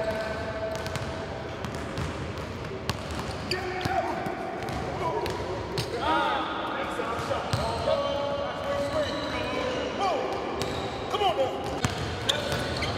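Basketballs bouncing on a hardwood gym floor, with sneakers squeaking in short squeals several times in the second half, in a large echoing gym with voices in the background.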